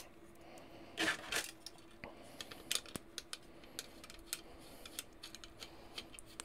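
Faint clicks and ticks of small screws being driven with a screwdriver into standoffs on a 3D-printed plastic robot chassis while the parts are handled, with a brief rustle about a second in.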